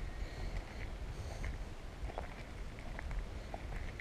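Footsteps crunching on a gravel track at a walking pace, over a steady low rumble of wind on the microphone.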